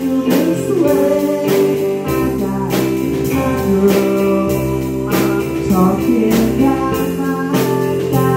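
A small band playing live: electric guitar, keyboard and drum kit with a singing voice, over a steady beat of about one and a half drum hits a second.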